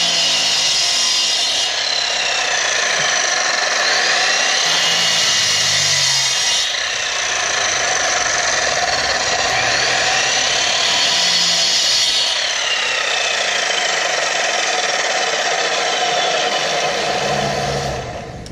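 Miter saw with a diamond blade cutting ceramic tile in quick plunge cuts. It runs continuously, and its whine sags and recovers several times as the blade is pushed down into the tile.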